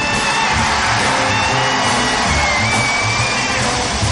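Jazz big band recording: dense ensemble playing over a bass line, with a long high note held above it that steps up in pitch about halfway through.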